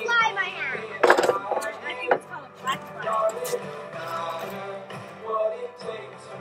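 Background music, with a single sharp knock about a second in.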